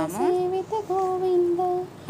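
Singing in a high voice, holding long, steady notes.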